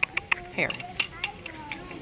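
Irregular sharp clicks and taps, about half a dozen in two seconds, from plastic-framed sunglasses being handled close to the microphone.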